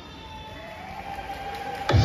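Playback music dips low in the break between two songs of a dance medley, with a faint tone that rises slowly. Near the end, the next track comes in suddenly and loud, with a heavy beat.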